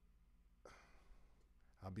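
Near silence with a faint breath from the man at the microphone a little over half a second in; his speech starts again near the end.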